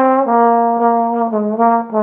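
Bach 42T large-bore tenor trombone playing a slow jazz ballad melody solo: a held note, a few short notes, then a long, lower note held.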